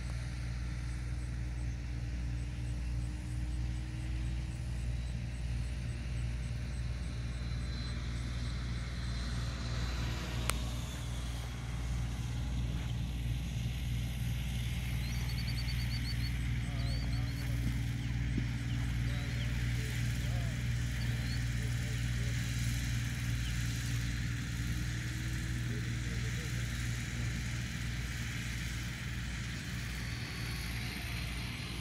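Electric ducted-fan model jet (a 105 mm EDF L-39) in flight: a steady rushing whine that swells during the second half and eases off near the end, over a constant low hum.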